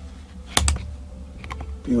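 Small metal-on-metal clicks as needle-nose pliers pick at the soft aluminum retaining ring on a starter solenoid's copper contact: two sharp clicks about half a second in, then a few fainter ticks.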